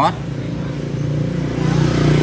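Honda SH Mode scooter's single-cylinder 125 cc engine idling steadily.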